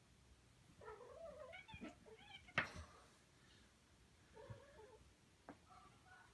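Siamese kitten meowing in several short, wavering calls, in two runs with a gap between them. A single sharp knock comes about two and a half seconds in, with a few fainter taps.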